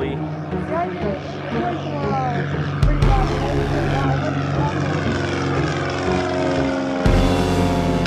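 Single-engine propeller airplane climbing out after takeoff and passing overhead, its engine note slowly falling in pitch as it goes by. Voices are heard early on, and a person laughs about five seconds in.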